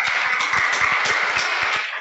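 Audience applauding: many people clapping at once in a dense, steady spell that dies down near the end.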